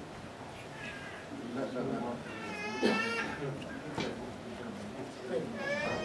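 Two short, high-pitched wailing calls, one about two and a half seconds in and one falling in pitch near the end, over the low shuffling and murmur of a congregation standing into prayer rows.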